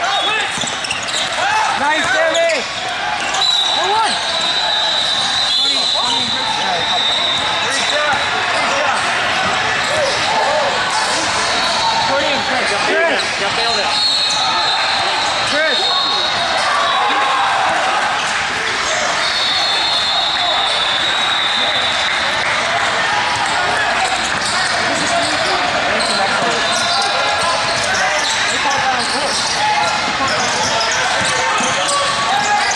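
Basketball bouncing on an indoor court amid a steady hubbub of voices from players and spectators, echoing in a large sports hall.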